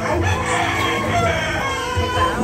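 A long, drawn-out animal call, over continuing background music.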